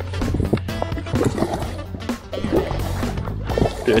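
Background music playing.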